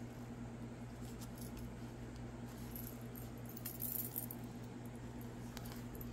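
Faint handling of tarot cards, soft clicks and rustles, a little busier about four seconds in, over a steady low electrical hum.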